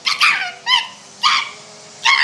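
A woman's voice giving three short, high-pitched squawks, mimicking the squawky calls of a young bald eagle.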